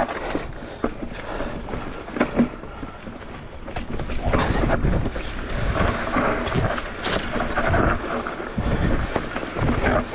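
Mondraker Crafty R electric mountain bike rolling down a dirt and stone singletrack: tyres crunching over the ground and the bike rattling and knocking over bumps, with a louder knock about two and a half seconds in. Wind buffets the action-camera microphone.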